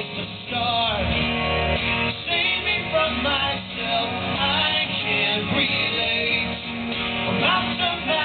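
Two acoustic guitars played together live, strumming and picking, with a man's wordless sung vocal line gliding over them.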